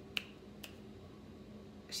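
Two finger snaps about half a second apart, the first louder, made while trying to recall a name.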